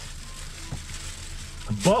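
Plastic bubble-wrap packaging crinkling and crackling as it is handled and unfolded.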